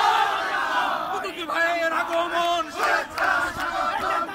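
A marching crowd of men shouting Bengali political slogans together, loud chanted voices rising and falling over the general noise of the crowd.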